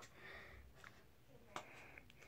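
Near silence: faint handling noise of hands working at a small cardboard toy box, with one soft click about one and a half seconds in.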